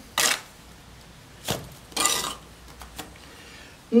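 Steel trowel scraping and packing cement mortar into a wall recess: a short scrape near the start, a brief knock about a second and a half in, and a longer scrape at about two seconds.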